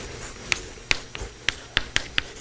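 Chalk writing on a blackboard: a sharp click from each chalk stroke, about six in two seconds at an uneven pace.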